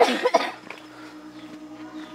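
A person coughs briefly, then low, steady sustained music notes set in about half a second later.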